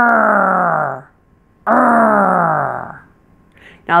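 A woman's voice growling like a tiger twice, two drawn-out 'errr' sounds about a second apart, each sliding down in pitch. It is the American r-coloured ER vowel, made with the tongue pulled back and tense and touching nothing.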